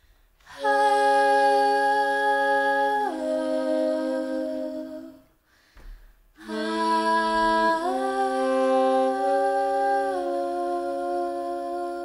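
Big band ensemble holding soft, sustained chords in two phrases. The first starts just after the beginning and changes chord once before fading a little after the midpoint. After a brief pause, a second phrase enters and moves through several chord changes.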